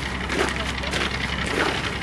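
Outdoor ambience: faint, indistinct voices of people nearby over a steady low rumble.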